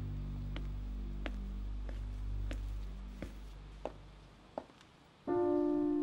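A low, steady music drone with soft ticks about every two-thirds of a second fades away; then, just over five seconds in, a grand piano starts playing slow, held notes.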